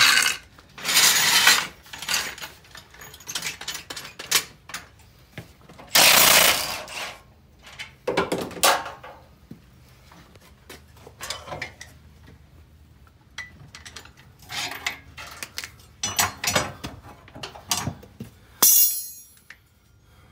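Irregular clanks, rattles and scrapes of hand tools and metal suspension parts being handled during a coilover spring swap, with louder clatters about a second in, around six and eight seconds, and a short high rasp near the end.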